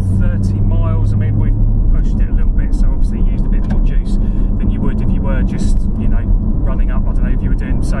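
Porsche 718 Cayman GT4's mid-mounted 4.0-litre naturally aspirated flat-six, heard inside the cabin at a steady cruise with road noise, under a man talking. The engine drone is low and steady; its deepest tone stops about two seconds in.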